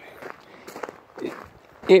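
A person's footsteps while walking, a few soft steps, with a man's voice starting up again at the very end.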